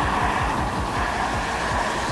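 Mercedes-Benz EQB 300 4MATIC electric SUV driving along the road, its tyre and road noise a steady rush, with background music underneath.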